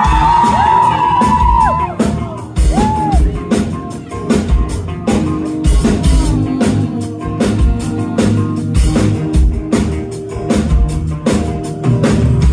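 Live band music heard from within the audience: acoustic and electric guitars over a drum kit keeping a steady beat, with a woman singing. Crowd whoops and shouts in the first couple of seconds.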